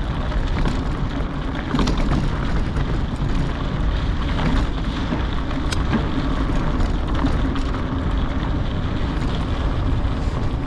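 Wind buffeting the microphone of a camera moving along a dirt trail: a steady rumbling rush, with the crunch of the trail surface and a few sharp clicks and knocks scattered through.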